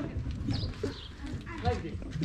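Scattered voices of onlookers in an outdoor crowd: brief snatches of talk and calls between louder lines, over a low background rumble.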